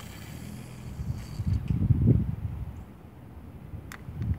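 Wind buffeting the phone's microphone: a low rumble that swells to its loudest about two seconds in, then eases, with a sharp click near the end.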